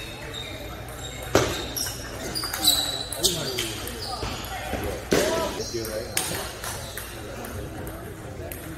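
Sharp, separate clicks of a table tennis ball: a short rally of paddle strikes and table bounces, then a few more scattered ball taps after the point ends, over the hum of a large room.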